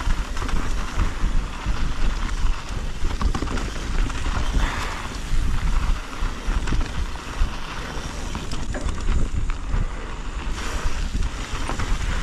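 Wind buffeting the microphone in a heavy, gusting low rumble while a mountain bike rolls fast over dirt singletrack, its tyres and frame giving a steady rattle and chatter.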